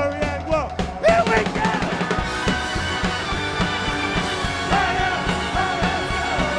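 Live rock band playing: drum kit keeping a steady beat under electric guitars and bass, with a singer's voice over it. A loud hit lands about a second in.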